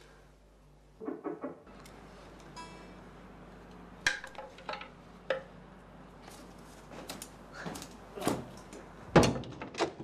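A series of knocks and thuds on a door, the loudest just before the door is opened, with a few brief musical notes in the first few seconds.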